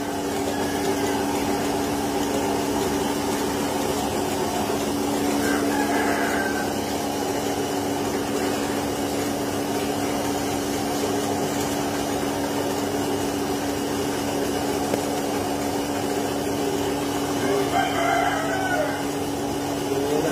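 Milking machine vacuum pump running with a steady hum while transparent-can units milk cows. Two brief calls rise over it, one about a third of the way in and one near the end.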